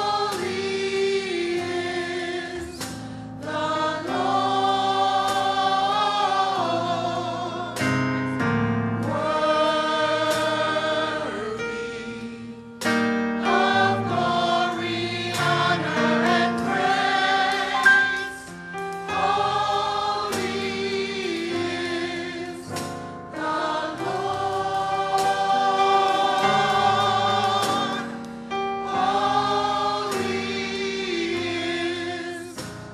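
A church choir singing a gospel praise song in parts, holding long notes in phrases with short breaks between them.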